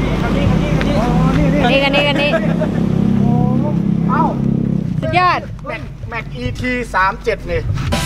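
A vehicle engine idling steadily under people talking, fading out about five seconds in.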